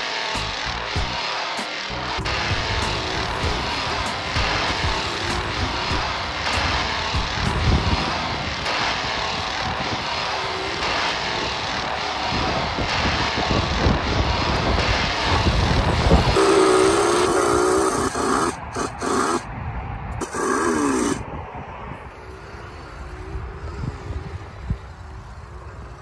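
Chainsaw engine running and revving, its pitch swinging up and down a few times late on before it drops away.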